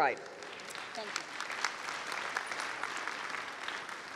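Audience applauding: many hands clapping in a steady patter that begins to ease off near the end.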